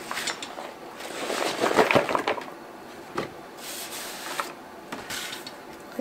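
Chopped raw vegetables being scraped off a plastic cutting board with a knife and hand and dropped into a bowl: irregular scraping and light clattering, busiest about two seconds in, with a few sharp clicks.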